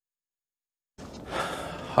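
Silence for about a second, then background noise and a man's sigh just before he speaks.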